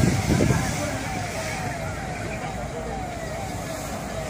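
A siren sounding a quickly repeating falling tone, about two sweeps a second, over a steady background rumble, with voices near the start.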